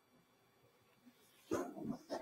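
Near silence, then a person's voice starts suddenly about one and a half seconds in.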